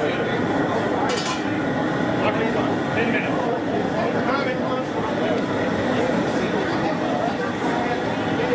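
Several people talking indistinctly in the background, with a brief sharp clink about a second in.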